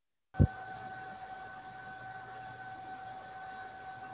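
A short thump as a video-call microphone opens, then steady background hiss with a low hum and a steady high whine from that open microphone.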